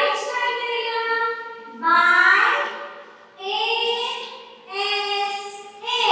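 A high-pitched voice in four long, drawn-out phrases with short gaps between them.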